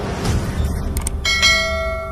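Logo-animation sound effects: a low rumble, a short click about a second in, then a sharp metallic bell-like hit that rings on with several steady tones, slowly fading.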